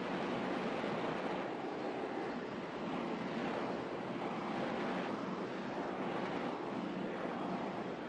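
Steady hiss of room tone: an even, unbroken noise that swells and fades slightly, with no distinct events.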